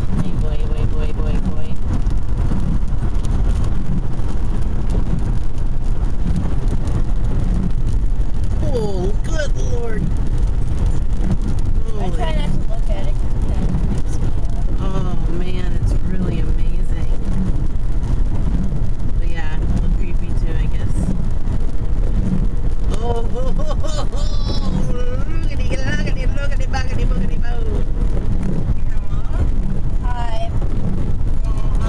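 Steady low road and engine rumble inside a moving car, with indistinct voices coming and going from about a third of the way in.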